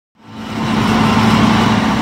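Engine sound effect for an animated harvester driving across the screen. It fades in over about half a second, then runs steady with a low hum.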